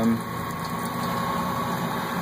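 Steady mechanical running hum from the brewing rig's equipment, with a faint thin whine above it, unchanging throughout.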